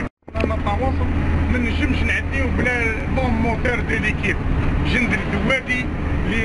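Men's voices talking inside a bus over the steady low drone of the bus engine. The sound drops out for a split second at the very start.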